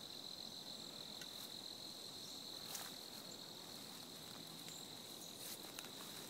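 Insects in the woods keeping up one steady, high-pitched trill. A few short clicks stand out, the loudest about halfway through and two more near the end.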